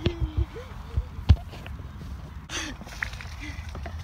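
Wind rumbling on the microphone, with a few dull handling thumps in the first second and a half and a short hiss about two and a half seconds in; faint voices murmur underneath.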